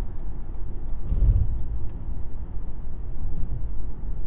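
Steady low rumble of engine and road noise inside a moving car's cabin, swelling briefly a little over a second in.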